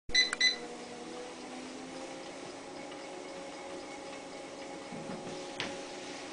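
Two short electronic beeps at the very start, then the steady hum and whine of a treadmill's motor and belt running. A single light tap comes near the end.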